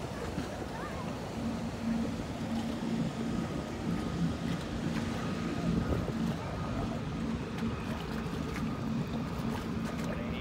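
A boat engine drones at a steady pitch from about a second in, with a fainter steady higher tone joining a little later, over wind and water noise.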